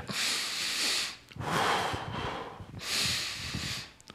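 A man breathing deeply and audibly through his mouth, close to the microphone: three long 'hoo' breaths of about a second each, in a demonstration of slow, deep breathing.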